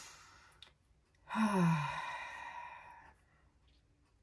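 A woman draws a breath, then lets out one long, voiced sigh starting a little over a second in, falling in pitch as it trails off.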